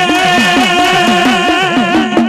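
Gujarati folk music: a singer holds one long, slightly wavering note over the rapid strokes of a small hand drum whose pitch swoops down and up with each beat, about three to four times a second.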